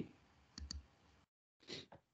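Near silence on a video-call line, broken by two faint clicks about half a second in and a short soft noise near the end.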